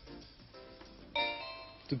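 Faint music from a television station's logo interlude, then about a second in a louder bell-like chime of several held tones that fades away.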